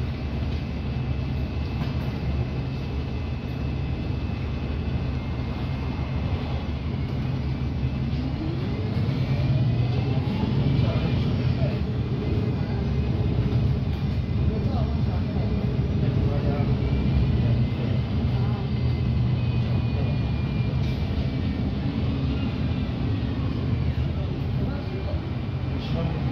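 Cabin sound of a 2019 Alexander Dennis Enviro200 MMC single-deck bus: the diesel engine runs at idle, then the bus pulls away about eight seconds in, with a rising whine as it accelerates, and keeps running at road speed, louder than at rest.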